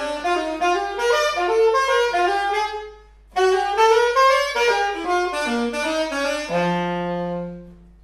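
Solo saxophone playing a fast jazz line of quick running notes, with a short break for breath about three seconds in, and ending on a long held low note.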